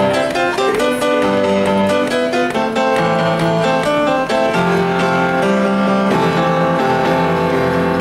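Upright piano being played, with held chords and melody notes that change about every second.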